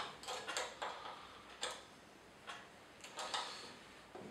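Small spanner tightening the end locking bolts that clamp a blade in the cutter block of an Elektra Beckum HC260 planer: a few light, irregular clicks as the spanner is worked and refitted on the bolt heads.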